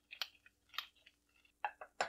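Handheld spice grinder being twisted to grind salt and pepper, giving a few short, faint crunching bursts.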